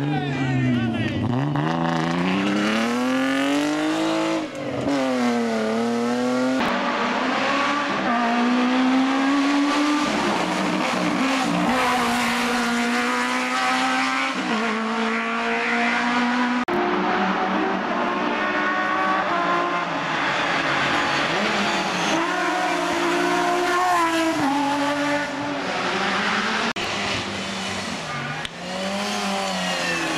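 Hill-climb race cars at full throttle through tight corners, one car after another. The engine notes climb and drop over and over as the drivers shift and brake, with tyres squealing through the hairpins.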